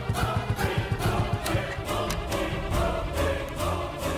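Background score music with wordless choir-like singing over orchestral accompaniment.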